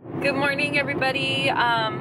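A woman's voice inside a car, over the car's steady low engine and road noise in the cabin.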